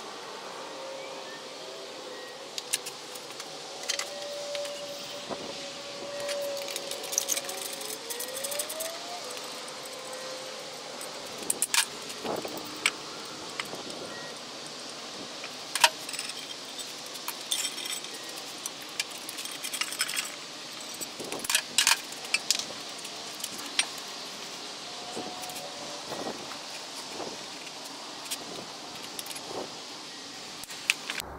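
Metal clinks and clicks of a wrench working the manifold bolts on a Nissan L28 inline-six cylinder head, with clanks of the intake and exhaust manifolds being handled as they are unbolted and taken off. The clinks come in scattered bunches.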